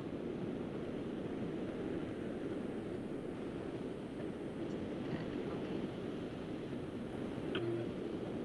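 Steady background noise from an open microphone on a video call, a low even hiss with no distinct events. Faint voice fragments come through about five seconds in and again just before the end.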